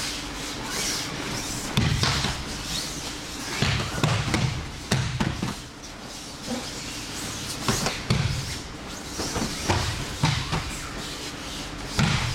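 Bodies landing on tatami mats in aikido throws and breakfalls: irregular dull thuds and slaps, roughly one every second or so from several pairs at once, in the echo of a large hall.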